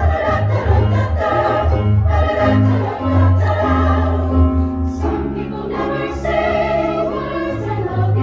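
A chorus singing a pop medley in harmony, accompanied by an amplified electric keyboard that holds sustained low notes beneath the voices.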